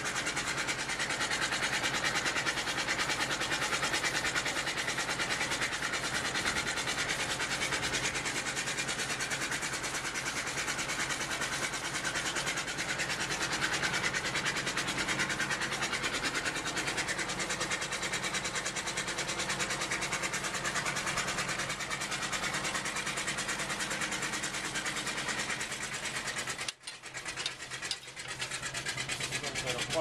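1916 Waterloo steam traction engine running, its steam engine chugging in a steady, even rhythm with mechanical clatter. The sound briefly drops out near the end.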